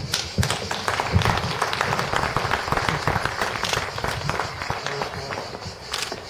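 A crowd applauding, breaking out suddenly as a speech ends and dying away over about five seconds.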